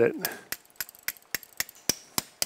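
A mallet tapping the handle of a suture-anchor inserter: a series of sharp, evenly spaced taps, about three a second, driving a 2.6 mm knotless all-suture soft anchor into the bone of the greater trochanter.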